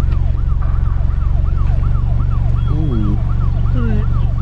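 Siren in a fast rising-and-falling yelp, about three cycles a second, holding a steady level over a low hum.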